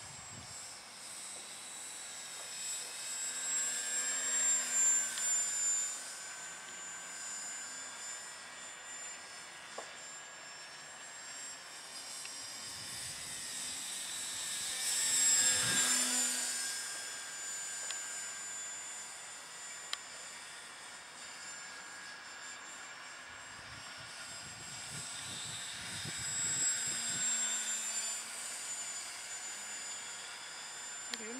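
An 800 mm radio-controlled Boeing P-26 Peashooter model flying overhead: its motor and propeller make a steady high-pitched whine. The whine swells three times as the plane makes passes, loudest about halfway through, when the pitch drops as the plane goes by close.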